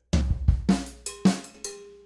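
A drum kit played in a short run of about six strokes from a funk groove, mixing kick drum, snare, hi-hat and toms, with the last stroke left ringing. The snare note that should be a soft ghost note is struck hard: the wrong way to play it, which breaks up the flow of the groove.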